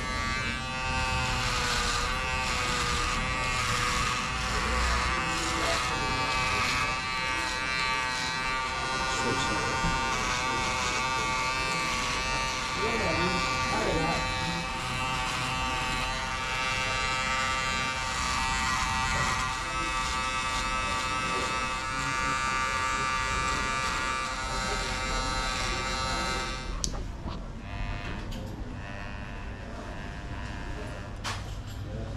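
Electric hair clipper buzzing steadily as the barber trims the neck and the side of the head. The buzz stops with a click near the end.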